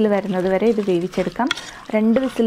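A person speaking, over a metal spoon stirring raw pork pieces and spice powders in a metal pot.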